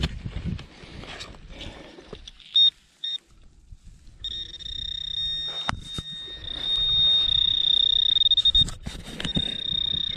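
Handheld metal-detecting pinpointer probe sounding in a dig hole over a buried brass buckle: two short beeps a little before halfway, then a steady high-pitched tone from about four seconds in that briefly pulses near the end, the signal of metal close to its tip. A single knock comes partway through.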